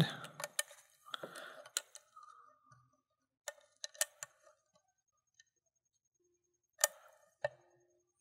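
Scattered faint clicks of a thin lock pick scraping and lifting the pins of a five-pin Eagle Lock pin-tumbler cylinder under light tension, with a small cluster in the middle and a louder click about a second before the end as pin three sets.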